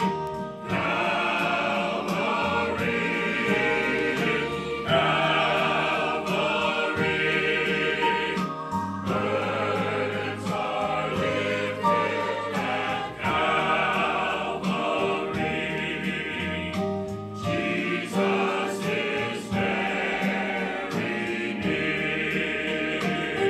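A mixed church choir singing a hymn together in parts, in phrases with short breaks between them.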